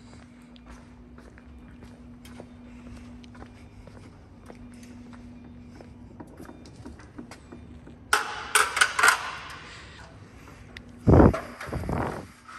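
Hands-on mechanical work on a gyroplane's rotor mast: light clicks and handling noises over a faint steady hum, then a loud, sharp metallic clatter of several quick strokes about eight seconds in, and a heavy thump near the end.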